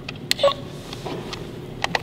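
Handling clicks from a handheld electric-shock game toy: a sharp click, then a brief beep, then two more clicks near the end.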